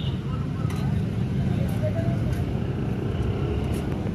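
A steady low rumble of a motor vehicle engine, with voices in the background.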